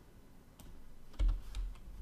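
A few computer keyboard keystrokes as code is being edited, with a dull low thump just over a second in.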